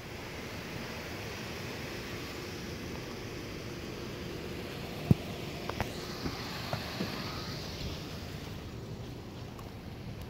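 Steady outdoor background noise of traffic and wind on a phone microphone, with a few faint clicks about halfway through.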